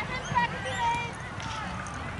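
Footballers' voices calling and shouting across an open pitch, distant and unclear, in short pitched calls.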